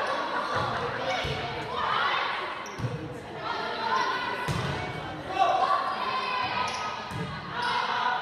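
Volleyball rally in a gymnasium: several separate thumps of the ball being struck and hitting the hardwood floor, echoing in the hall, over a steady layer of players' and spectators' voices.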